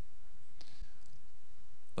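A pause in speech through a microphone and sound system: a steady low hum, with a faint breath about half a second in and a small soft knock just after.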